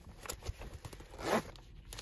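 A sealed plastic KF94 face-mask packet being handled and torn open, with small crinkles and clicks and one louder rip about a second and a half in.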